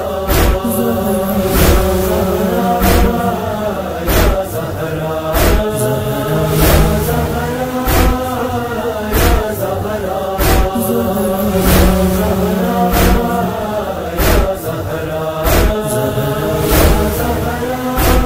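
A noha chorus of voices chanting a wordless, slowly rising and falling refrain, over rhythmic matam chest-beating thumps about every 1.2 seconds.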